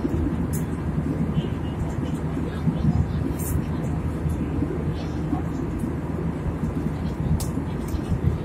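Steady low rumble of a jet airliner's cabin in cruise, heard inside the cabin beside the wing and its turbofan engine. A few faint clicks come through.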